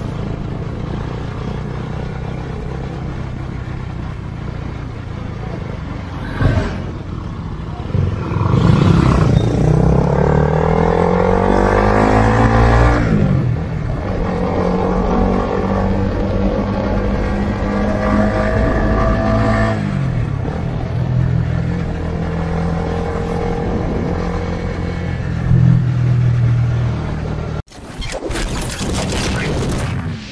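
Sport motorcycle engine heard from the rider's seat, pulling up through the revs with a rising pitch from about eight seconds in, dropping at a gear change around thirteen seconds, then running steadily before another shift near twenty seconds. Road and wind noise runs underneath.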